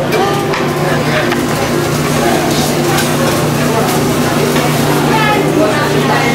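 Busy buffet-line ambience: a steady low hum with background voices, and now and then the short clink of serving utensils against metal pans.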